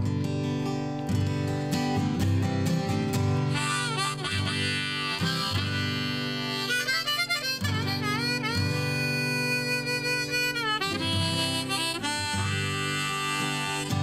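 Harmonica played from a neck rack over strummed acoustic guitar, an instrumental song intro. Its held notes bend and waver in the middle stretch.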